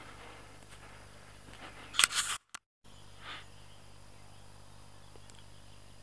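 Quiet outdoor ambience, broken about two seconds in by a short, loud rustling clatter of the camera being handled and set down, followed by a moment of dead silence where the recording cuts.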